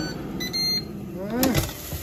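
Digital air fryer's electronic beep about half a second in, a short high-pitched tone signalling the end of the cooking cycle. A sharp click follows about 1.5 s in.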